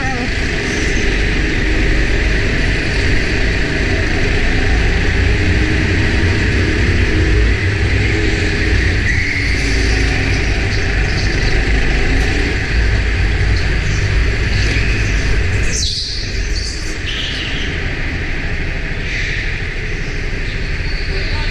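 Go-kart engine heard from onboard, running in a steady drone while racing on an indoor track. About sixteen seconds in the sound breaks sharply and then runs a little quieter as the kart slows.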